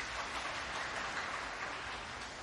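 Arena audience applauding a snooker break, a dense patter of clapping that swells to its height about a second in.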